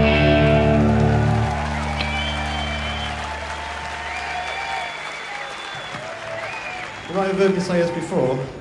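A rock band's final electric-guitar chord ringing out and dying away over the first couple of seconds, then a festival crowd applauding and cheering, with a few long whistles.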